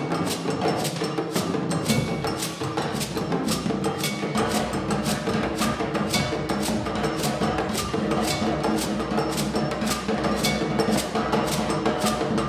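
Live band playing a Beninese brass-band tune: saxophones, keyboard, guitars and drums over a steady, bright percussion pattern of about four strokes a second. A low bass line comes in about four seconds in.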